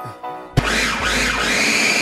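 Food processor motor running, starting suddenly about half a second in and going on steadily to the end, its pitch rising and then falling slightly, over background music.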